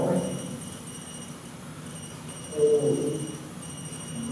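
High electronic alarm tone from paranormal-investigation detectors going off, heard as played-back video audio. The tone cuts out about a second in, returns about two seconds in and breaks briefly again near the end. A muffled lower sound rises about two and a half seconds in.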